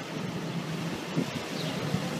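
A large box-body ambulance's engine runs close by amid steady city street traffic noise.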